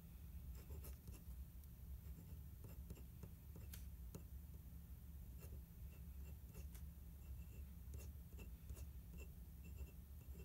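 Glass dip pen nib scratching faintly on paper as a word is written, short strokes with small ticks, over a steady low hum.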